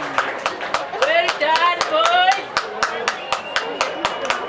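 Steady hand clapping, about four claps a second, with voices calling out over it.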